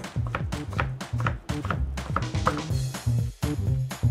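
Background music with a steady low bass line, over repeated quick taps of a chef's knife chopping blanched Swiss chard on a cutting board.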